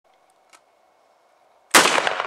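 A single 7.62×39 mm shot from an AK-47 pistol near the end, sudden and very loud, with an echo that rings on afterwards.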